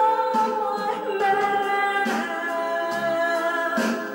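A woman singing karaoke into a handheld microphone, holding long, steady notes one after another.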